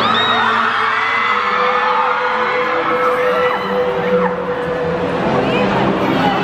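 A crowd cheering, with many high-pitched screams rising and falling, over music playing underneath.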